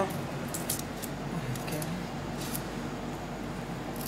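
Fingers peeling garlic cloves: a few faint, light clicks and rustles of papery skin over a low steady hum.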